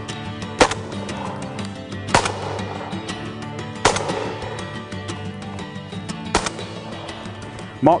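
Four shotgun shots, sharp and sudden, coming about one and a half to two and a half seconds apart, over a steady background music bed.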